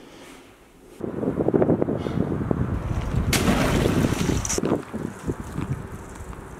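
Wind buffeting an outdoor microphone, starting suddenly about a second in as a loud, rough rumble and easing off near the end.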